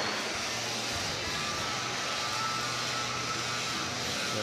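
Combat robots' motors running in the arena: a steady whine over a low hum, with no impacts.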